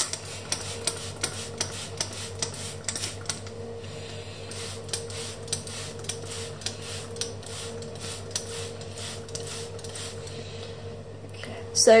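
A finger-pump spray bottle of K&N air filter cleaner squirted over and over onto a cotton air filter, a quick hiss with each pump at about three a second, pausing briefly about four seconds in. A steady low hum runs underneath.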